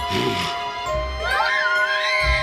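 Young children screaming high-pitched in fright, starting about a second in, over steady background music.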